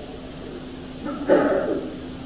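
Steady low hum and hiss of an old lecture recording made through a microphone, with one brief wordless voice sound about a second in.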